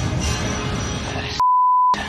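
Film score and battle effects. About a second and a half in, all other sound cuts out and a steady pure beep tone sounds for half a second: a censor bleep over a spoken word.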